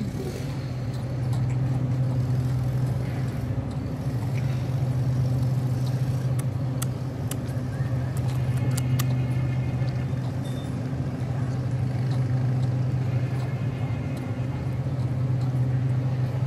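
A steady low motor hum with a weaker overtone above it, with a few faint clicks over it.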